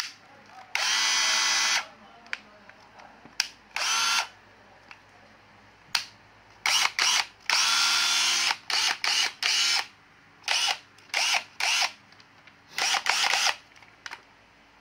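National 12V cordless drill-driver's motor run in a series of short trigger bursts, about eight runs, some about a second long and others brief blips, each spinning up and stopping. A few sharp clicks come between the runs.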